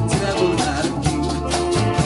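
A live Latin band playing, with electric guitars, keyboard and drum kit, and a man singing into the microphone.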